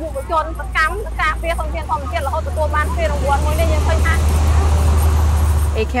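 A person speaking over a low, steady rumble of road traffic that grows louder over the last four seconds, as though a vehicle passes close by.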